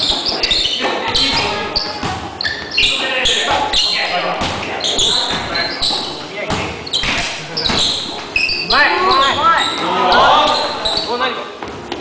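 Basketballs bouncing on a hardwood gym floor, giving repeated sharp knocks that echo in the large hall, amid players' voices and calls.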